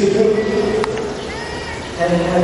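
A person's drawn-out voice held on a steady pitch for about a second and a half, with a sharp click near the middle.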